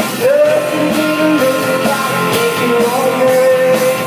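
Live rock band playing, heard loud through a phone's microphone: electric guitars, drums and keyboards, with the singer holding one long note that slides up into pitch just after the start and is held to the end.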